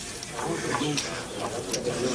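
Bird cooing in short, repeated low calls, with indistinct voices underneath.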